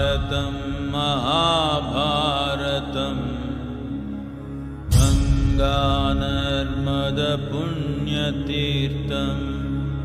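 A mantra chanted by a voice over a steady low drone, its pitch gliding in ornamented bends. A new chanted phrase starts about five seconds in.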